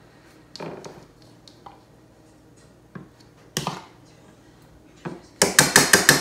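Wire whisk clinking against a ceramic bowl of beaten egg: a few scattered taps, then a quick run of about six strokes near the end.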